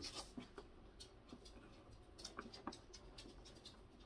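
Faint, scattered clicks and scrapes of hands handling a plastic air cooler housing while pushing its small caster wheels into their sockets.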